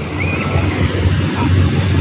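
Open beach ambience dominated by a loud, fluctuating low rumble of wind buffeting the phone's microphone, with a few faint, brief distant voices from people at the water.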